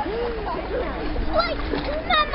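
Pool water splashing as a child swims at the edge, with a child's short high-pitched call about one and a half seconds in.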